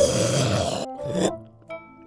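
Dinosaur growl sound effect: a rough, grunting growl of about a second, then a short second grunt. Background music with held notes follows.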